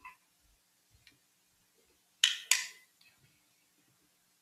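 Two sharp, loud clacks about a third of a second apart, each fading quickly, among a few faint taps: handling noise on a desk close to a microphone.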